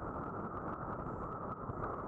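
Wind buffeting a camera microphone during kitesurfing: a steady, muffled rushing noise.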